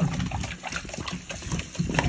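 A Belgian Malinois lapping at a running kitchen faucet, its tongue slapping the stream in quick, irregular slurps, with the water splashing into a stainless steel sink.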